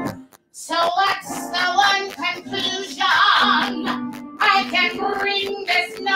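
A woman singing a song with wavering, sustained notes over piano accompaniment. The sound cuts out briefly for a fraction of a second just after the start.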